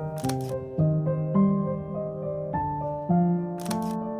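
Two shutter releases of a Leica M11, one just after the start and one near the end, each a short sharp click, over piano music.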